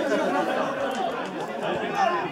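Spectators at the touchline talking over one another in overlapping chatter, with a laugh near the start.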